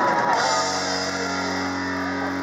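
Live rock band with electric guitars: the singing stops just after the start, a cymbal crash comes about half a second in, and the guitars then hold one chord ringing steadily.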